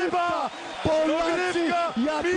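Speech only: a male sports commentator shouting one short word over and over in high-pitched excitement.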